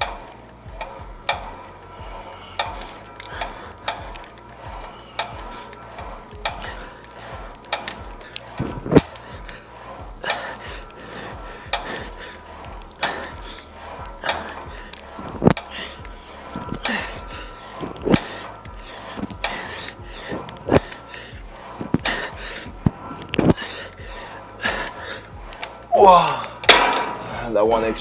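Cable machine weight stack clinking and knocking with each rep of rope tricep pushdowns, a sharp metallic click about every second. A short vocal sound comes near the end, over faint background music.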